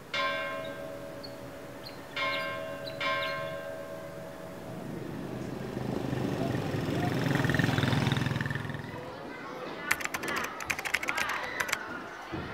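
A bell struck three times in the first three seconds, each stroke ringing on. A low rumble then swells and fades, and a rapid crackling follows near the end.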